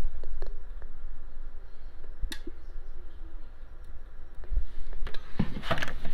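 Handling noise from a handheld phone being moved about: a low steady rumble with a few light clicks and taps, the sharpest about two seconds in.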